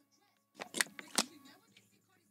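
A drink bottle handled right at a microphone as it is drunk from and lowered: a few short, sharp crackles about half a second to a second in, the loudest two near the middle.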